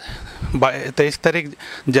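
A man speaking in Bengali. There is a brief low rumble near the start.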